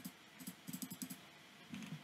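Faint clicking of a computer mouse: a single click at the start and another about half a second in, then a quick run of about five clicks in the middle, and a short cluster near the end.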